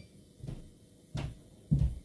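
A few dull, low thumps, the last one, near the end, the loudest.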